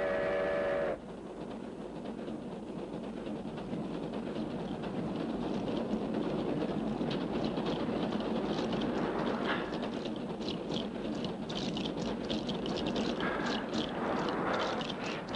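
A passing train: a steady rumbling that slowly builds, with rapid, regular hissing beats from about halfway through.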